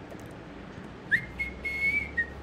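Someone whistles a single clear note. It starts about a second in with a quick upward slide and then holds steady. A few faint keyboard clicks come before it.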